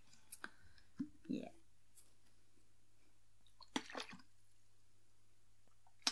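Water from a plastic bottle squirted onto a soft face cleaner to wet it, with the bottle handled: a few small clicks and wet squishes in short bursts, about a second in and again about four seconds in.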